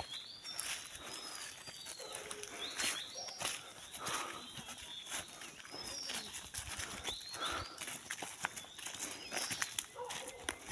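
Footsteps crunching and rustling through dry leaf litter on a forest path. Over them, a bird calls again and again with short, high, falling whistles.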